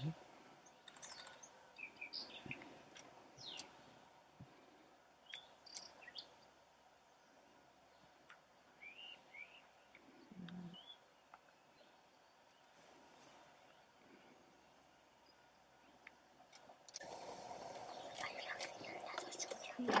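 Faint, scattered chirps and short calls of small birds in the open. A brief low murmur of a voice comes about halfway through, and a steady hiss of noise rises for the last three seconds.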